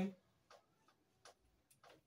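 Whiteboard marker writing letters: a few short, faint ticks of the tip against the board, spread over two seconds.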